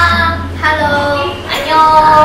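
Women's voices calling out a drawn-out, sing-song greeting, 'Konnichiwa~', with a second greeting, 'Annyeong~', starting about one and a half seconds in, over background music with a steady low bass.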